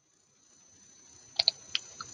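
Computer mouse clicking: two quick clicks about a second and a half in, then a softer one, over faint hiss.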